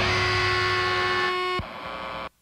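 The final distorted electric guitar note of a death metal demo held and ringing steadily as one sustained tone, then cut off abruptly about one and a half seconds in, leaving a short stretch of hiss.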